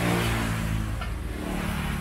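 A motor vehicle's engine running as it passes by, loudest at the start and slowly fading away.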